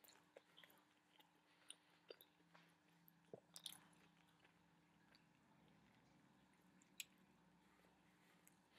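Faint chewing of a mouthful of Big Mac, with soft wet mouth clicks and smacks, most of them in the first four seconds and one sharper click about seven seconds in.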